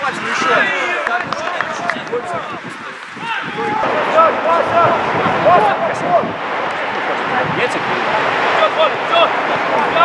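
Several players and coaches shouting to each other across an outdoor football pitch during play, overlapping calls at a distance. The calls ease off briefly around three seconds in, then pick up again.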